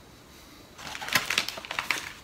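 Chocolate bar wrapper crinkling as it is handled: a quick run of irregular crackles starting just under a second in.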